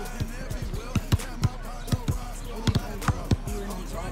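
A basketball bouncing on an asphalt court, a quick run of sharp, irregularly spaced thuds, about two to three a second, with faint music and voices underneath.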